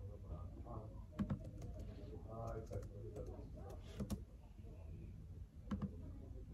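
Typing on a laptop keyboard: irregular key clicks, with louder strokes about a second in, around four seconds and near the end.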